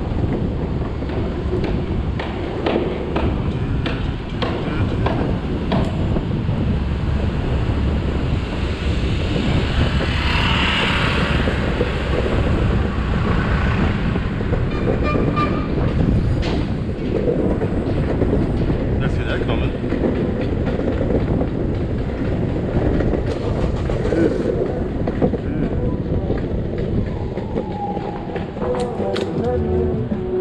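Skateboard wheels rolling over city pavement: a steady rough rumble broken by frequent small clacks over cracks and seams.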